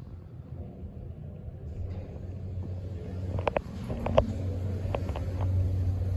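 MEI hydraulic elevator car travelling up: a steady low hum builds from about two seconds in and grows louder, with a few short sharp clicks in the second half.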